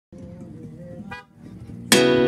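A motorcycle engine running with a steady low hum, and a brief horn beep about halfway through. Loud strummed acoustic guitar music cuts in right at the end.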